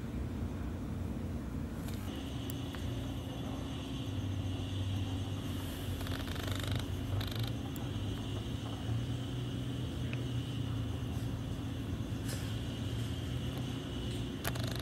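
A steady low mechanical hum with a fainter steady high whine joining about two seconds in, and a few faint clicks.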